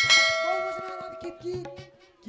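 A single loud, bell-like metallic strike that rings on in many clear high tones and fades away over about a second and a half.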